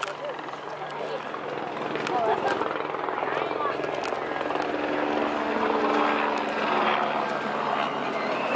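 People talking in the background over a steady low motor drone.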